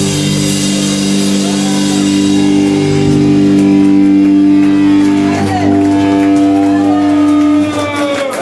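Amplified electric guitar and bass holding one droning chord as a hardcore punk song rings out at its end, the drums having stopped; the drone cuts off abruptly near the end. Voices shout and call out over it in the second half.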